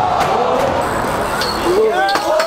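Several people's voices calling out over a crowd's hubbub, with a few sharp knocks.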